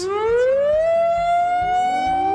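Industrial site's major emergency alarm: a wailing siren whose pitch rises steeply over the first second, then keeps climbing slowly and holds high. It is the signal to go to a refuge area immediately.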